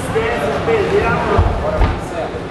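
Indistinct voices of people calling out in a hall, with two dull low thumps in the second half.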